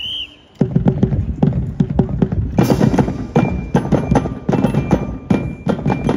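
Marching drum corps of snare and bass drums starting to play about half a second in, a fast, continuous rhythm of sharp snare strikes over low bass-drum thuds.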